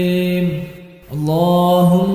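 Unaccompanied voice chanting the salawat dhikr. A long held note fades out just before the middle, there is a brief breath-length gap, and the next phrase begins with a rising note that settles and is held.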